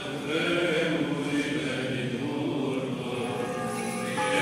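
Orthodox church chant sung by a group of voices, with the held notes of the hymn carrying steadily on.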